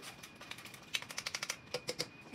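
Wire whisk ticking against the side of a metal saucepan as it is stirred back and forth: faint, quick ticks, coming fastest for under a second about a second in.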